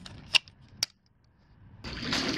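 Two sharp clicks about half a second apart: the spring V-clip on a leaf rake's handle snapping into the locking hole of an aluminium pool pole.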